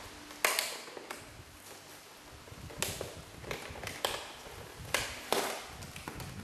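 Action figure packaging being handled and opened: a run of sharp clicks and crinkly taps at uneven intervals, the loudest about half a second in.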